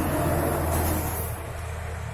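Background rumble like road traffic: a steady low hum under a broader noise that swells over the first second and a half, then eases.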